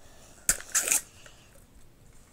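A plastic Toy Mini Brands capsule being opened by hand: a sharp click about half a second in, then a short crackle of plastic and wrapper, and a few faint ticks after.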